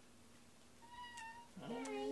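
A house cat meowing twice: a short, high, even-pitched meow about a second in, then a louder, lower meow that dips and rises near the end.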